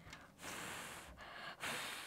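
A boy blowing puffs of breath at a paper pinwheel: one longer blow about half a second in and a shorter one near the end. The pinwheel barely turns.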